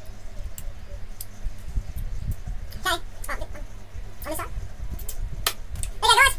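A man eating a spoonful of Vegemite: low rumbling mouth and handling noise with a few clicks, and three short grunts around the middle.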